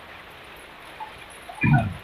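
A steady faint hiss with one short, loud vocal cry about one and a half seconds in.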